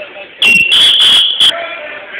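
Wrestling referee's whistle blown in one long shrill blast of about a second, with a brief break partway through, then a short final blast.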